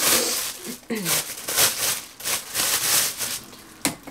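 Thin plastic refill bag of a Diaper Genie cartridge crinkling and rustling in several bursts as it is pulled up out of its ring, with a sharp click near the end.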